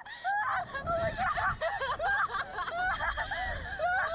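Two girls laughing hard in quick, high-pitched bursts, one burst after another.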